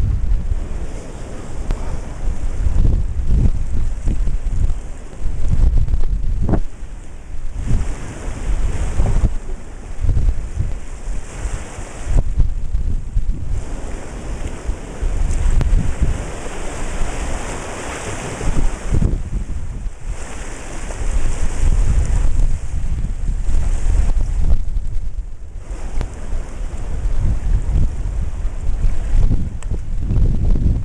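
Wind buffeting the microphone in gusts over the rush of ocean surf washing through a rocky tide pool. About halfway through, a wave surges in with a longer, louder hiss of foaming water.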